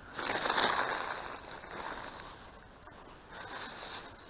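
Thin plastic shrink-wrap from a beer multipack crinkling as it is crumpled and stuffed into a rubbish sack, loudest in the first second or so, then fading, with a little more rustling near the end.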